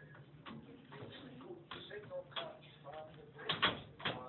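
Indistinct talking, with two sharp knocks close together near the end, the loudest sound.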